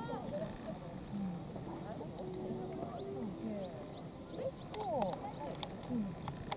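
Young players' voices calling and shouting across an open soccer pitch, several overlapping at once, with a louder cluster of calls about five seconds in.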